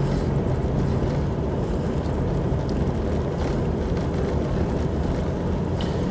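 Jeep driving at a steady speed on a dirt road: a steady rumble of engine and tyres on the gravel.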